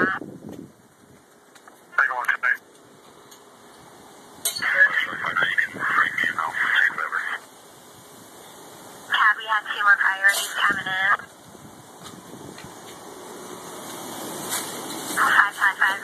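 Police and fire dispatch radio traffic from a scanner: three short, tinny transmissions of voices, with a low hiss between them that grows louder near the end.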